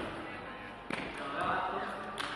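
A single sharp knock about a second in, ringing out in a large, echoing hall, with indistinct voices.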